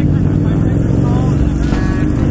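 Honda CBR600RR sportbike's engine running steadily while under way, heard from the rider's own bike. Brief bits of speech come in about a second in and near the end.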